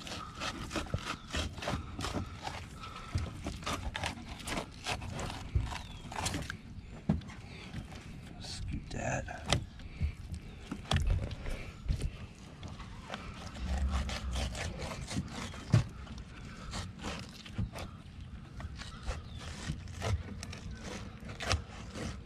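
A fillet knife cutting and scraping against a cutting board as a blue catfish is filleted and skinned, with irregular clicks, taps and scrapes.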